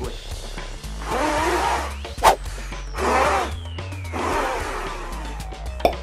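Three forceful breaths blown out through a homemade two-layer cloth face mask, coming out as muffled rushes of air. Two sharp clicks, one between the first two breaths and one just before the end, are the loudest sounds.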